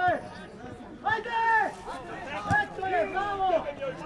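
Speech only: men's voices talking, with other voices in the background.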